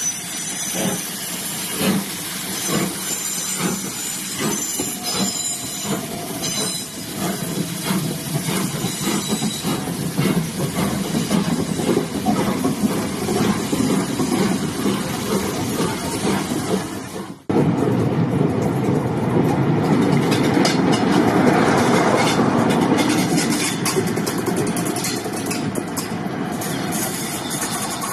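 LMS Jubilee class steam locomotive 'Bahamas' pulling out with its train, its exhaust coming as a run of regular beats over the first several seconds, then the coaches rolling past with a steady rumble of wheels on rail. There is an abrupt break about two-thirds of the way through, after which the wheel noise is louder and steadier.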